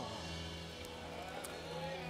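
Soft background music of steady held notes, sustained chords with no beat, under faint room noise.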